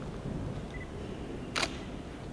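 A single sharp camera shutter click about one and a half seconds in, over quiet room noise.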